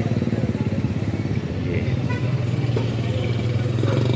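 A small engine running steadily close by, a low pulsing hum that grows stronger about one and a half seconds in.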